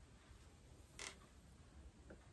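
Near silence, with one faint, brief scratchy handling sound about a second in as yarn is worked around the loom's warp strands.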